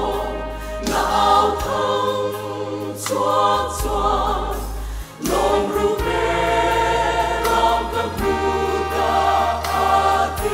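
Mixed choir of women's and men's voices singing a gospel hymn in parts, with held low bass notes beneath. The singing breaks off briefly about five seconds in, then carries on.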